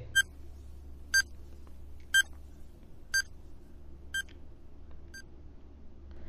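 Countdown timer sound effect: six short electronic beeps, one a second, growing fainter over the last few, over a faint low hum.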